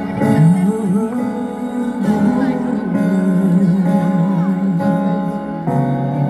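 A live pop band plays the instrumental introduction to a song, with sustained chords under a wavering melody line, heard through a concert PA.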